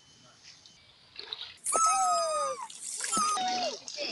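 A toddler crying out in two high-pitched wails, a long one falling slightly in pitch about halfway in and a shorter one near the end, as he is dipped into ditch water, with some water splashing.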